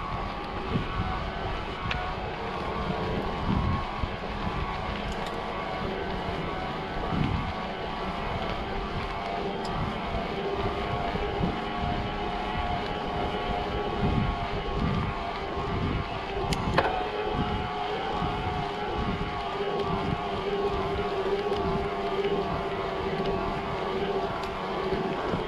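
Mountain bike rolling fast downhill on asphalt, the bike making a steady droning hum, with wind rumbling on the camera microphone and a single sharp click about 17 seconds in.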